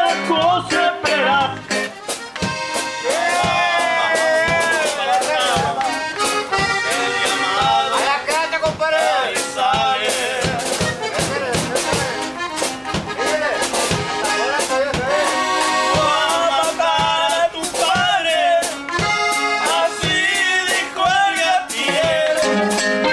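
A norteño band playing an instrumental break in a corrido: the accordion carries a running melody over guitar accompaniment and a steady beat, with no singing.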